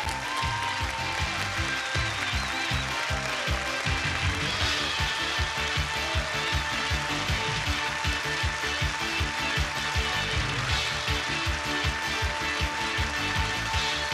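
Upbeat game-show theme music with a steady beat, with studio applause under it.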